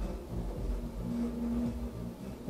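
Quiet background music from a karaoke sound system, mostly low bass, with a note held for about a second midway.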